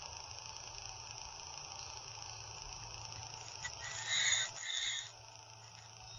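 Quiet room tone of a recording: a steady hiss over a low hum, broken about four seconds in by two short high-pitched squeaks in quick succession.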